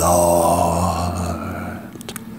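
A man's voice letting out one long, low groan held on a steady pitch, fading out just before the end.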